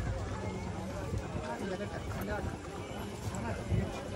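Faint, indistinct voices talking over a steady low background rumble.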